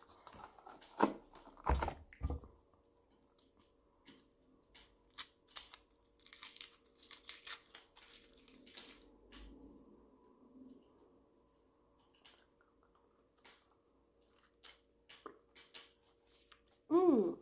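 Crinkling and tearing of a small chocolate's foil wrapper being unwrapped by hand, in irregular bursts, with a few sharper knocks near the start and a denser crinkly stretch in the middle.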